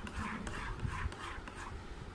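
A metal spoon stirring thick kulfi mixture in a metal tin, scraping and swishing in repeated strokes, a few per second.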